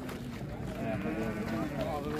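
Several people's voices talking over one another in a crowd.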